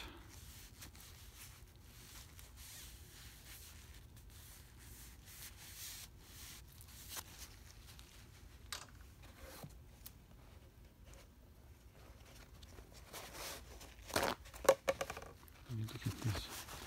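Paper towel rubbed and wiped around inside an oily open steering gearbox housing: faint rustling, crinkling and scrubbing, with a louder burst of rubbing near the end.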